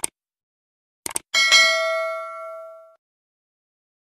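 Subscribe-animation sound effect: short clicks, then a quick double click about a second in, followed by a bright bell ding that rings and fades out over about a second and a half.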